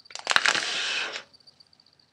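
A paper origami waterbomb being inflated by mouth: a few crackles of the paper, then one breath blown through the opening for about a second before it stops.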